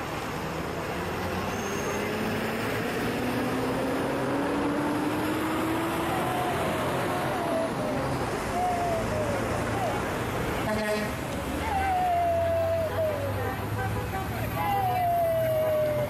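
Steady outdoor traffic noise, with one vehicle's engine rising in pitch as it accelerates past, then people's voices calling out over the traffic in the second half.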